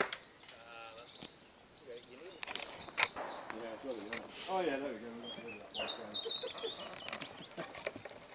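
Small birds chirping in quick high runs, with people's voices in the background and one sharp knock about three seconds in.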